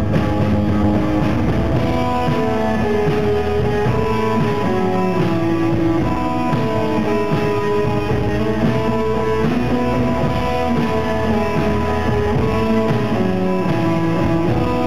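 A live rock band playing: electric guitars over a drum kit, recorded from the audience.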